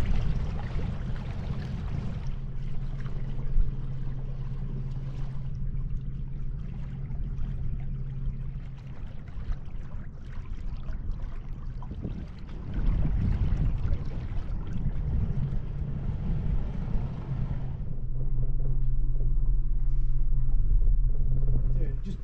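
A sailing yacht's inboard diesel engine running steadily, a low hum with rumble that grows louder about four seconds before the end.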